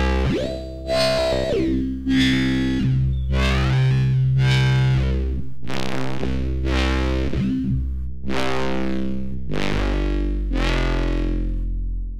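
Distorted foghorn bass from the Vital software synthesizer, played as sustained low notes that change pitch a few times. Its tone sweeps bright and falls back about once a second while the second oscillator's sync (wave morph) setting is changed.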